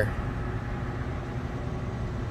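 Steady low rumble of a vehicle engine running in the street.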